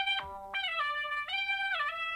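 Cosmovox app on an iPhone playing a synthesized theremin-like tone through the phone's speaker. Its pitch slides up and down several times as the phone is moved around.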